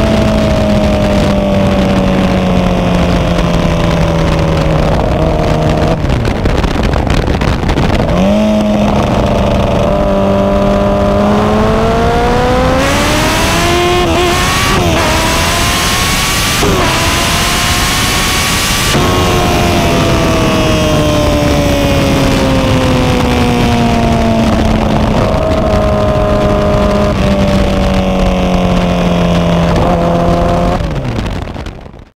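Kawasaki ZX-10R four-cylinder engine running in first gear, its revs rising and falling slowly with the throttle: sinking at first, dipping about six seconds in, climbing again from about eight seconds, and easing off steadily over the last ten seconds. For several seconds in the middle a hiss rides over the engine note.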